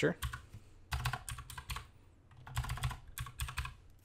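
Typing on a computer keyboard, in three short bursts of keystrokes with pauses between.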